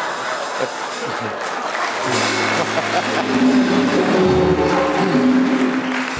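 Studio audience applauding, then the show's house band comes in about two seconds in with a short instrumental piece over a steady bass line.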